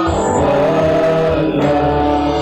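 Congregation singing a gospel worship song together, several voices holding long notes over a musical backing.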